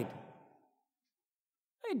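The last sung note of a man's unaccompanied hymn line fading out, then near-total silence, then the man starts speaking again just before the end.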